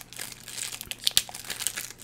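Cookie package wrapper crinkling in the hands as it is opened: a run of irregular crackles, loudest about a second in.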